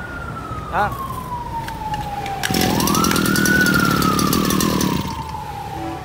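A siren wailing: a single tone slowly falling, then sweeping quickly back up about two and a half seconds in and falling slowly again. While it rises and peaks, a louder rush of rough noise sounds for about two and a half seconds.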